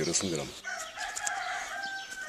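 A rooster crowing: one long drawn-out call, starting about half a second in and held for about a second and a half.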